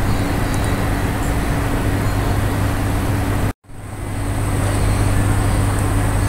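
Steady background noise of the recording, a low hum with hiss over it, which cuts out to silence for an instant about three and a half seconds in and fades back up.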